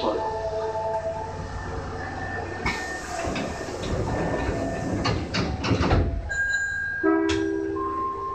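Subway train standing at an underground platform: a steady hum, then a stretch of noise and clatter through the middle, and fresh steady tones near the end.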